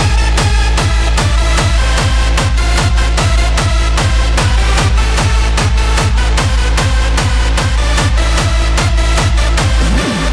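Hardstyle dance music: a heavy, distorted kick drum with a falling pitch on every beat, about two and a half kicks a second, driving under layered synth chords.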